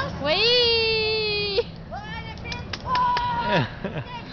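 A person's voice wailing: a long, loud cry that rises and then holds before cutting off, then a short rising cry, a few sharp clicks, and a high held note that drops away steeply near the end.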